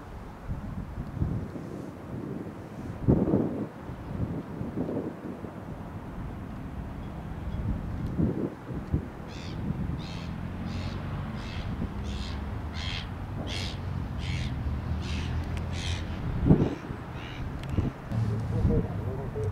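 A bird calling over and over, about fourteen short calls a little more than half a second apart through the second half, over the low steady hum of an airliner's jet engines. A few low thumps come in the first half.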